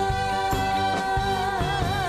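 A woman sings one long held note in trot style over a live band with a steady beat; near the end the note breaks into a wide vibrato.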